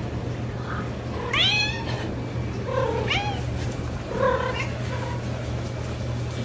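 Domestic cat meowing three times, about a second and a half apart; each call rises and falls in pitch, and the first is the loudest. A steady low hum runs underneath.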